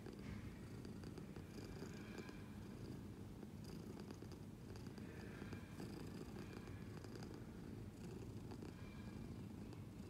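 A domestic cat purring, a faint, low, steady rumble.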